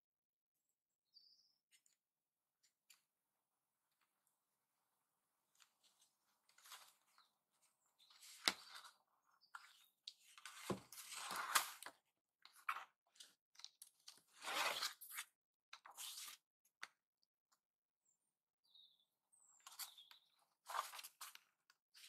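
Loose paper sheets and a card cover being handled: a series of short rustles and scrapes as pages are shifted and slid into place, starting after a few quiet seconds.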